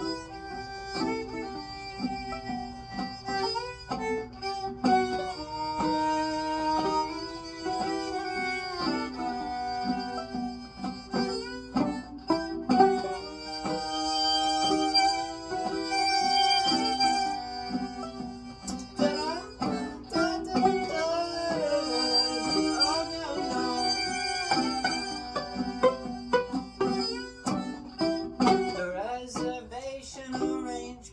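Violin played with the bow in an instrumental passage of held and sliding notes, with sharp plucked notes alongside.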